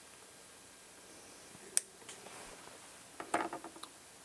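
Flush cutters snip a resistor lead with one sharp click about two seconds in. Near the end comes a quick run of small clicks and taps as a small kit circuit board is handled and set down on a silicone rubber mat.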